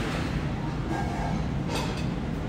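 Restaurant room tone: a steady low rumble with faint voices in the background.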